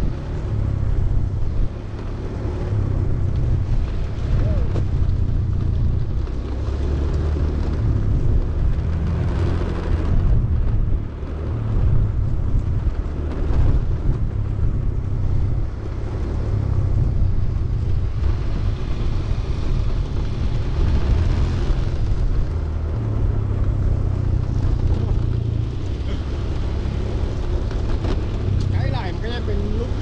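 Wind buffeting the microphone of a moving camera, mixed with the rolling rumble of inline skate wheels on rough, cracked concrete. The sound is a steady low rumble that swells and dips unevenly.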